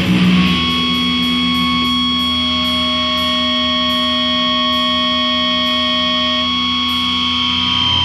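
Doom/sludge metal recording in a quieter break: the heavy riffing drops away and distorted, effects-laden guitar holds long ringing notes. The full band comes back in at the very end.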